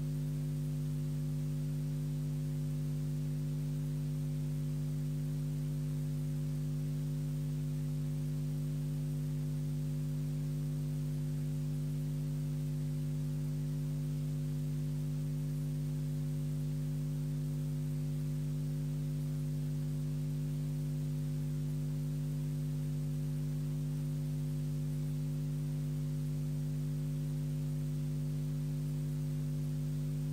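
Steady electrical hum: a constant low buzz made of several fixed tones, with faint hiss and no change in pitch or level.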